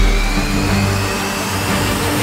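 Title-sequence theme music with a rising whoosh sound effect that builds steadily, over a heavy low boom at the start.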